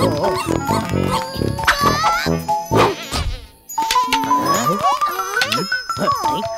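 Cartoon soundtrack of music and sound effects with many gliding, squeaky tones and sharp hits. After a brief dip in level, a stepped, rising run of notes follows about four seconds in.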